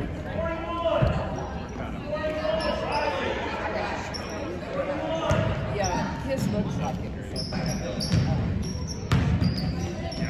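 Basketball bouncing on a hardwood gym floor, a handful of separate thuds at irregular intervals during live play, over the voices of spectators and players in the hall.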